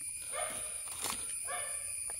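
A dog making two faint, short high-pitched calls about a second apart, with a light click between them.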